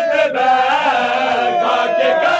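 Men chanting a noha, a Shia mourning lament, in long held lines.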